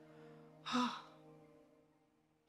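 A woman's tearful, breathy sigh, a short sobbing "oh" about a second in, over a faint held music chord that fades away.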